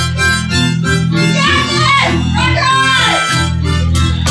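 Harmonica played through a microphone with notes bent down in pitch twice, over a steady low accompaniment and a drum kit in a live band jam.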